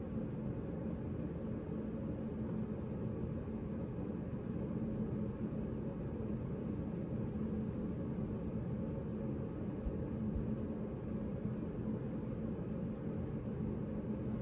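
Steady low hum and rumble of background machinery, with one faint steady tone running through it.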